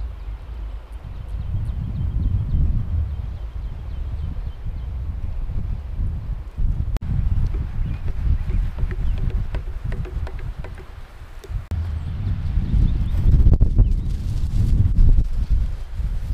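Wind buffeting the microphone outdoors: a low, uneven rumble that rises and falls, with a faint click about seven seconds in.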